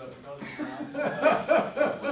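People in a meeting room talking and chuckling, with a run of short, pulsing bursts of laughter in the second half.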